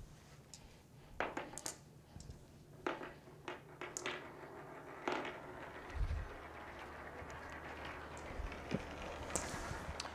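Faint scattered clicks and light knocks of small steel balls being set onto an acrylic rail and tapping against each other, over a low steady hum.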